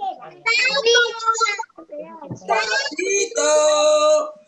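Young children's voices, heard over a video call, calling out in a drawn-out sing-song twice, summoning the toad ('sapito').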